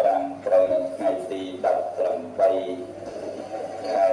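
Buddhist monk chanting into a handheld microphone, a single male voice in held, evenly pitched syllables that change every half second or so.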